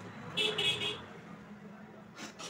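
A vehicle horn toots briefly, about half a second in, for roughly half a second.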